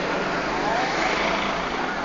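Steady street ambience: traffic noise with faint voices mixed in.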